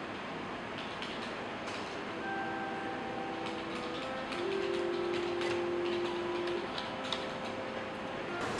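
Light, scattered clicks of a computer keyboard and mouse as a number is typed into a search box, over steady room noise. Several faint steady tones are held for a few seconds in the middle.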